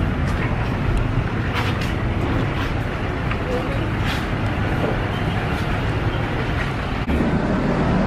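Steady outdoor background noise: a low rumble of road traffic.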